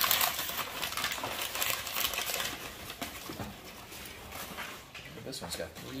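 Thin packing paper rustling and crinkling as it is pulled off a wrapped toy, busiest in the first few seconds and then dying away.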